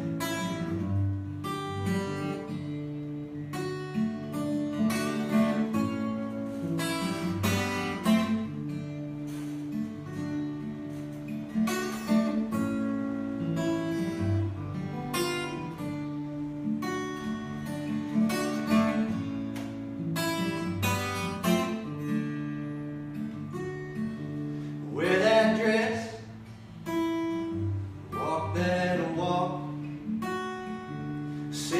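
Acoustic guitar strummed in an even rhythm, chords over recurring bass notes: the instrumental opening of a song.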